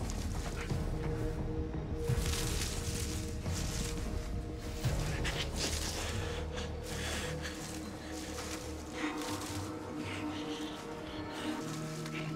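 Tense film score of held low tones, with scattered noises of movement through undergrowth over it.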